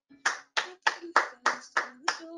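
Hands clapping in applause, six even claps at about three a second.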